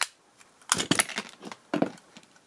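Screwdriver prying apart the snap-fit plastic case of a DIN rail electricity meter: a sharp click, then a quick run of plastic cracks and snaps about a second in, and one more near the end.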